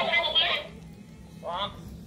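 Speech only: a high-pitched voice trailing off in the first half second, then a short voiced sound about one and a half seconds in, over quiet room tone.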